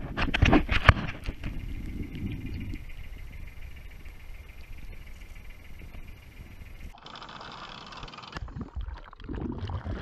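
Handling noise as an anchor on its rope is worked over a boat's bow roller: several knocks in the first second or so, then a low rumble and faint hiss. A short burst of rushing noise comes about seven seconds in.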